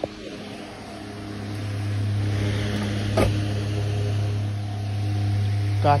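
Electric pedestal fan's motor giving a steady low hum that grows louder about a second in, with a brief knock about halfway.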